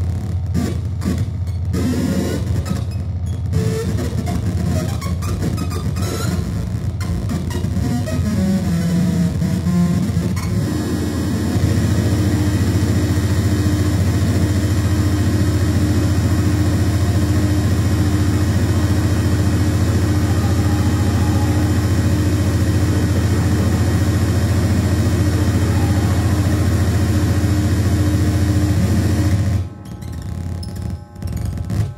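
Live band playing loud, distorted music. About ten seconds in it settles into one held, droning chord with a steady higher tone over it, which cuts off sharply just before the end.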